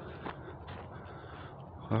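A couple of soft footsteps of a person walking over a faint steady hiss, then a man's voice exclaiming "oh" at the very end.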